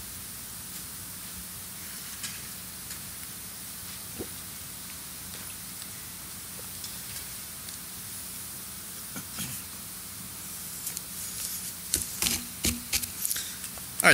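Steady hiss of microphone and room tone with a faint low hum, broken by a few faint clicks and a short run of knocks near the end.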